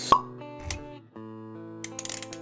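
Animated logo intro music with held notes, punctuated by a sharp pop sound effect just after the start and a soft low thump under a second in, with quick clicking effects near the end.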